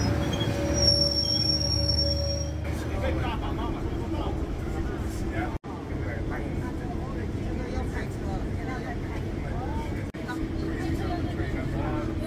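Metrolink commuter train at the platform giving a low hum with a steady high whine, then the inside of the moving passenger car: the train's steady running rumble with passengers talking.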